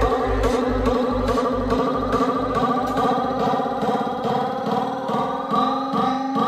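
Psytrance played loud over a club sound system. The four-on-the-floor kick and bass, at a bit over two beats a second, fade out about two seconds in and leave a melodic synth line on its own: the track goes into a breakdown.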